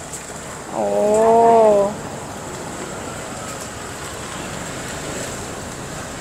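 Large pot of water at a rolling boil, a steady wash of noise, with a long drawn-out "oh" from a voice about a second in.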